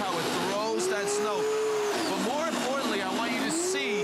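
Earthwise 12-amp corded electric snow shovel running with a steady motor whine while it throws heavy, slushy fake snow. The pitch sags a few times under the load and recovers.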